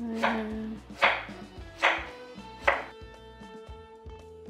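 Chef's knife chopping through a courgette onto a wooden chopping board: four strokes a little under a second apart, over soft background music.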